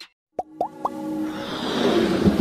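Animated logo intro sound effects: three quick rising pops about half a second in, then a swelling whoosh that builds toward the end.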